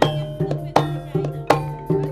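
Javanese gamelan music: struck metallophones ringing with drum strokes, a strong stroke about every three-quarters of a second and lighter ones between.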